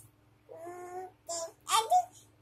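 A toddler girl singing in a small voice: one soft held note about half a second in, then two short, louder sung syllables near the end.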